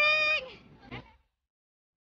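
A woman's high-pitched, excited squeal, held on one pitch and ending about half a second in. After a faint trailing sound the audio cuts to dead silence.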